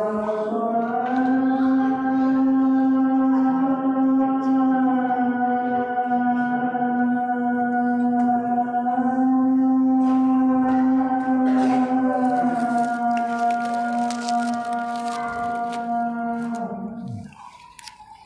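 A muezzin's call to prayer: one long chanted note held for about seventeen seconds, wavering slightly in pitch before it falls away near the end.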